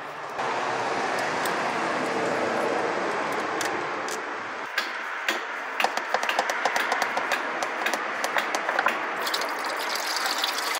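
Automatic transmission fluid pouring steadily from the valve body into a drain pan as the transmission filter is pulled off, the release the mechanic warns of when the fluid is warm. In the second half there are small clicks and knocks of the filter being worked loose.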